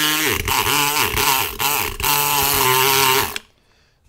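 Multipick Kronos electric pick gun buzzing as its vibrating needle works the pins of a five-pin cylinder lock under light tension. The pitch wavers and the buzz breaks off briefly a few times, then stops near the end once the lock has opened.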